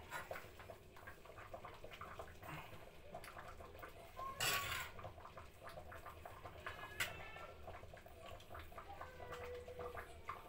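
A metal ladle scraping and scooping steamed couscous in a clay dish, giving soft scattered scrapes and clicks, with a louder rushing noise about four and a half seconds in.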